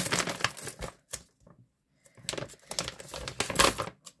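Loose coins clicking and clinking as they are handled, with a plastic coin pouch rustling; a quiet break of about a second in the middle.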